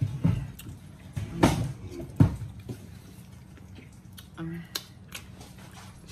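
Eating sounds at a table: mouth and chewing noises with light clicks of a utensil on a dish, and one sharp knock about two seconds in that she asks may be something hitting the floor. A short hummed "mm" comes about midway.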